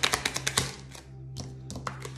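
Tarot deck being shuffled overhand: a rapid run of card flicks and slaps for the first half second or so, then a few single card taps as cards are drawn, over soft steady background music.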